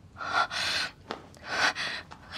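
A woman's startled gasp and hard breathing: two breathy bursts, the first the louder and about half a second long, with a short click between them.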